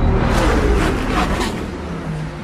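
Intro sound effect: a dense, noisy rumble with a few quick whooshes in the first second and a half, fading out steadily.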